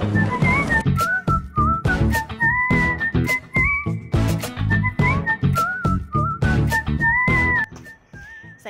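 Upbeat intro music: a whistled melody over a steady beat, cutting off just before the end.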